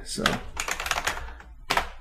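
Typing on a computer keyboard: a quick run of keystrokes, with a louder click near the end, as a text search is typed into the editor.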